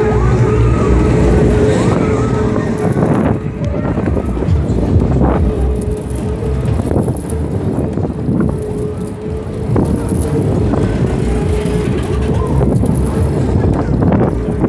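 Fairground ambience: a steady low rumble of machinery with a sustained hum, a few knocks, and fairground music in the mix.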